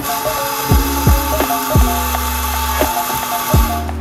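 Background music with a heavy beat, over a steady hiss from the espresso-making equipment that stops shortly before the end.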